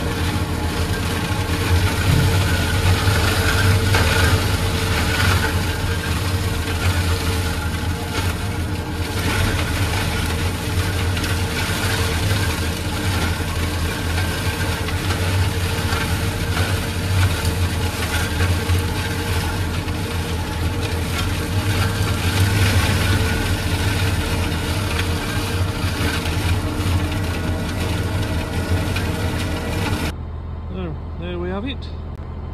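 Massey Ferguson tractor engine running steadily under load, driving a PTO-powered Kuhn flail mower that is chopping and mulching overgrown grass and brambles. The flail rotor's noise sits over the engine note throughout.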